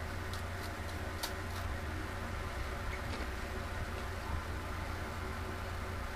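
A few small, crisp crunches as a cream-filled cinnamon cereal piece is bitten in half and chewed, the clearest about a second in, over a steady low hum.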